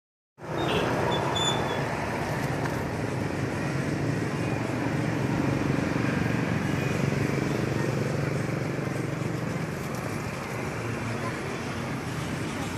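Steady noise of motor-vehicle traffic, running at an even level with a faint low engine hum and no distinct events.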